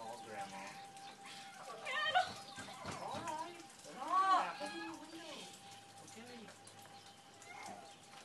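Indistinct voices talking quietly in short snatches, with a faint steady tone held underneath.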